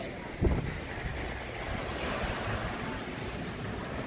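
Small waves washing onto a sandy beach, a steady rush, with wind on the microphone. A short thump about half a second in.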